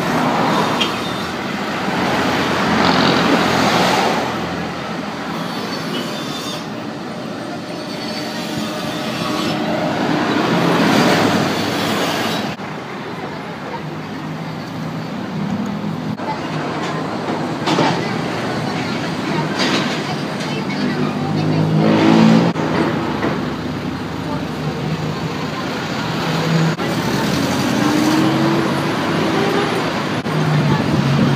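Road traffic passing close by: cars, vans and trucks go by one after another, the noise swelling and fading with each vehicle, loudest about a third of the way in and again past two-thirds.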